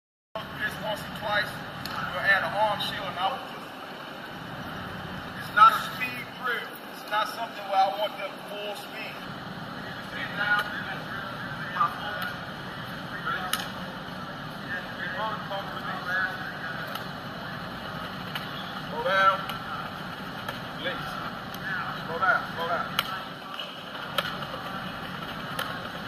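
Indistinct, distant voices of coach and players, too muffled to make out, over a steady hum and hiss, with a few sharp knocks scattered through. The sound cuts in a moment after the start.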